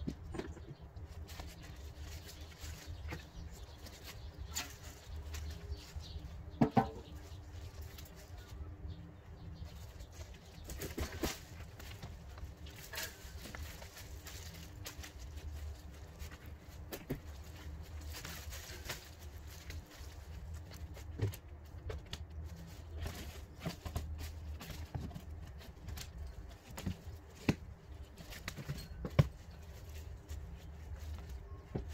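Dry leaves and garden debris rustling as they are gathered and tossed by hand, with a few sharp knocks, under a steady low rumble.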